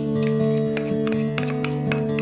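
Background music: acoustic guitar picking steady, held notes.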